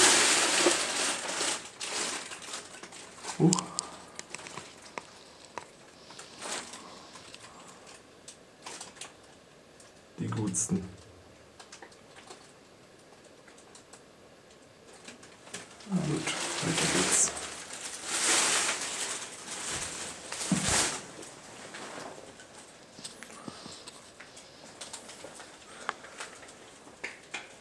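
Scattered bursts of rustling and handling noise with a few short, low vocal sounds, echoing in a small concrete room; the busiest stretch comes about two-thirds of the way through.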